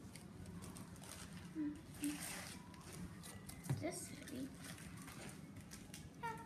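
Faint rustling and handling of a kit's packaging bags and parts, with a few brief, faint vocal sounds.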